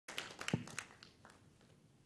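Handling noise from a handheld microphone: a quick run of clicks and taps over the first second, with one dull thump about half a second in.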